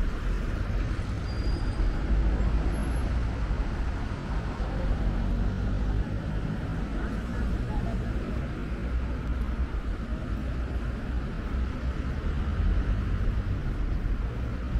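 Street ambience: a steady rumble of road traffic mixed with low wind noise on the microphone.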